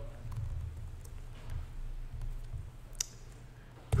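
A few sparse clicks of a computer keyboard and mouse as code is edited, over a low steady room hum; the sharpest click comes about three seconds in.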